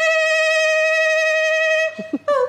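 A woman's singing voice holding one long high note at an unwavering pitch, cutting off just before the end.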